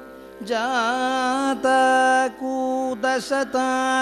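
Kathakali vocal music in the Carnatic style: a singer enters about half a second in, holding long notes and bending them in wavering ornaments over a steady drone, with short breaks between phrases.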